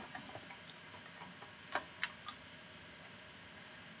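A few faint computer mouse clicks over quiet room tone, the clearest three in quick succession about two seconds in.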